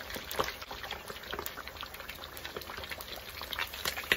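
Whole fish deep-frying in a wok of hot oil: the oil bubbles steadily with frequent sharp crackles and pops, a few louder ones near the end as the fish is lifted out with tongs.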